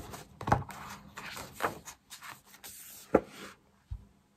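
Sheets of a scrapbooking paper pad being turned and handled, the paper rustling, with two knocks: one about half a second in and a louder one about three seconds in.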